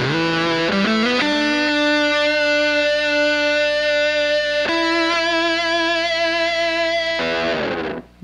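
Distorted semi-hollow electric guitar played through a Tentacle octave-up pedal into a Fulltone OCD overdrive boosted by a Fulltone 2B, giving a fat, fuzz-like lead tone with an added upper octave. A few quick notes open it, then two long sustained notes, the second starting about halfway in, and a short run of notes near the end.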